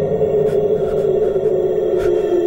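Horror suspense score: a sustained droning tone that slowly sinks in pitch over a soft hiss, with faint scattered ticks.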